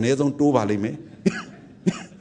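A monk's voice giving a sermon in Burmese, trailing off about a second in, followed by two short coughs.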